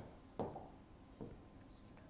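Marker pen writing on a whiteboard, faint: a tap about half a second in, then short scratchy strokes a little past the middle.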